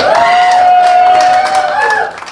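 Audience cheering and clapping, with one voice holding a long whoop over scattered claps.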